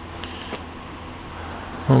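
Steady low background hum with a couple of faint clicks, and a man's voice starting near the end.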